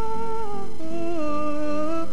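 Male singer holding a long, high wordless note into a handheld microphone. Just under a second in he steps down to a lower note and holds it with a slight waver.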